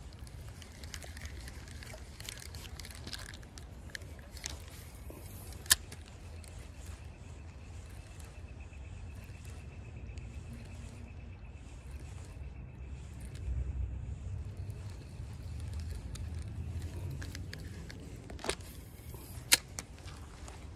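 Steady low rumble of outdoor stream-side ambience, with a few sharp clicks from handling a spinning rod and reel, the loudest about six seconds in and near the end.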